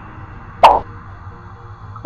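A single short cartoon sound effect with a sharp start, about half a second in, lasting a fraction of a second, over faint background music.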